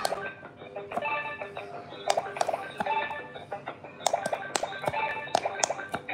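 Electronic quick-push pop-it game toy playing its electronic tune, with frequent sharp clicks as its light-up silicone buttons are pressed.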